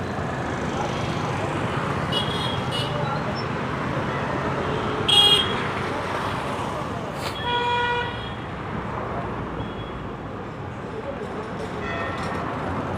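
Street traffic noise with vehicle horns honking: short toots about two seconds in, a brief loud one about five seconds in, then a longer single horn note for under a second near eight seconds.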